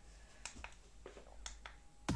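Several faint, sharp plastic clicks, about five in a second and a half, from a white plastic astronaut star-projector lamp being handled and switched on.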